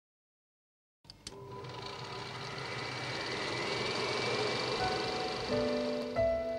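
After about a second of silence, a couple of clicks and then a steady mechanical whirring that grows louder, the sound of a film projector running in a theme intro. Held musical notes come in near the end.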